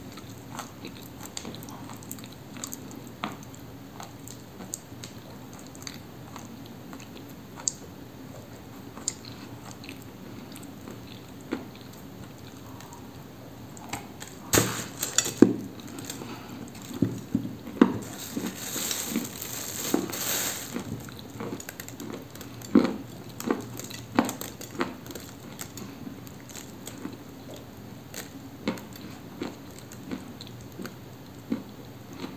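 Close-up biting and chewing of a dry, crumbly cookie of pressed Cambrian clay: scattered crunches and mouth sounds, with a run of louder crunching bites about halfway through and a denser crackling stretch shortly after.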